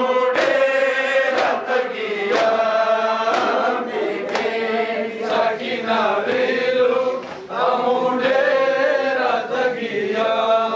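A group of men chanting a mourning lament (nauha) together, with sharp hand-on-chest strikes of matam landing about once a second in time with the chant.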